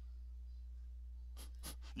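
A pause in a man's speech, with a steady low hum under the recording. Two faint short mouth noises come near the end, just before he speaks again.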